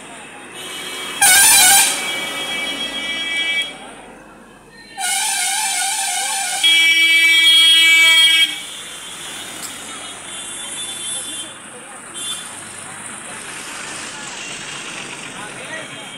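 Vehicle horns in busy street traffic: a short, very loud blast about a second in, then a wavering horn tone and a long steady horn blast held for about two seconds in the middle, over the general noise of the street.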